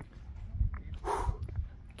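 A tired climber's heavy breath, one noisy exhale about a second in, over low rumbling thumps on the microphone.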